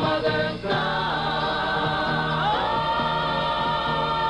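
A group of singers performing a gospel-style song with instrumental backing. About two and a half seconds in, the voices slide up together into a new long-held chord.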